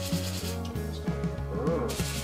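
Hiss of a liquid nitrogen cryotherapy spray gun freezing a skin lesion, breaking off for about a second in the middle and starting again near the end, over background music.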